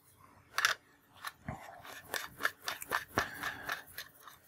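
Irregular small metal clicks and scrapes of a vape tank, an iClear XL, being screwed onto the threaded connector of a Smok Groove II box mod, with hand handling noise; most of the ticks come after about a second in.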